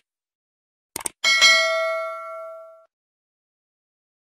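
Subscribe-button sound effect: two quick clicks about a second in, then a bright notification-bell ding that rings and fades out over about a second and a half.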